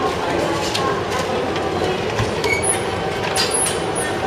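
Train running through a railway station: a steady rumble of rail noise, with a few short high-pitched squeals in the second half.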